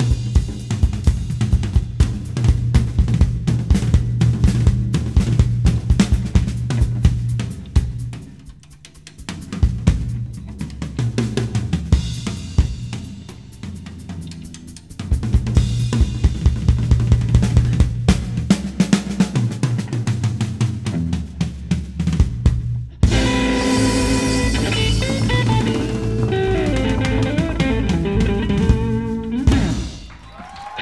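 Live rockabilly drum kit solo: fast strokes on snare, toms and bass drum with rimshots, easing off twice to quieter passages. About 23 seconds in, the hollow-body electric guitar and upright double bass come back in with the full band for the closing bars, which stop just before the end.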